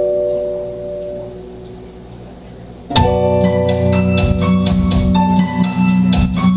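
A band song starting: an electric guitar chord rings and fades, then about three seconds in the full song comes in abruptly with a steady percussive beat and bright chiming notes over the guitar.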